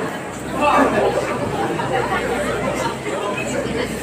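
Indistinct chatter of many voices from a seated audience, with no single clear speaker.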